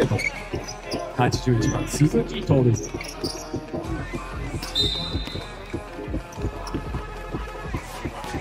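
A basketball bouncing repeatedly on a hardwood court over steady arena music, with voices around a second or two in. A short, high whistle blast sounds about five seconds in, the referee stopping play.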